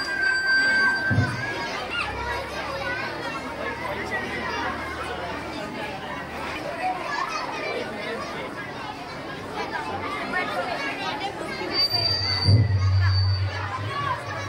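Many children's voices talking at once, a steady crowded chatter with no single voice standing out, with a low thump near the end.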